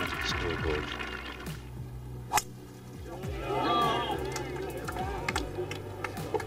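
A single sharp click of a golf club striking the ball off the tee about two seconds in, followed by spectators murmuring as the ball flies.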